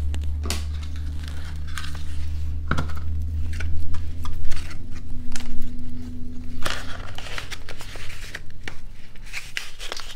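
Hands working paper ribbon and cardstock: rustling, scraping and scattered light clicks as gingham ribbon is pulled off its plastic spool and wrapped around a black cardstock pillow box. A low steady hum runs underneath and stops shortly before the end.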